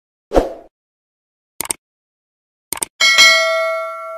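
Subscribe-button animation sound effect: a short thump, two quick double clicks about a second apart, then a bell ding with several ringing tones that slowly fades.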